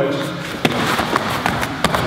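Several sharp thuds and slaps from a karate sparring exchange on foam mats: kicks, blocks and feet landing.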